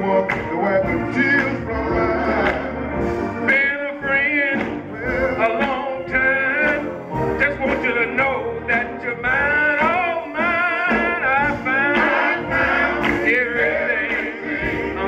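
Live gospel music: male singing in long, bending runs with vibrato over a drawbar organ and a drum kit.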